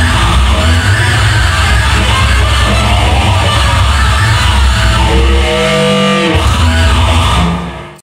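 Live rock music: a loud electric guitar played hard over a heavy low end, dense and full, fading out abruptly in the last half-second.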